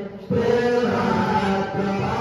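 Hindu mantra chanting in long held notes, which drops out briefly just after the start and then resumes.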